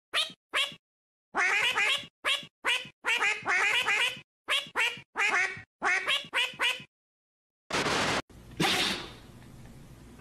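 A white domestic duck quacking in a quick series of short calls, with abrupt silent gaps between them. The calls stop about seven seconds in, and a brief rushing noise follows near the end.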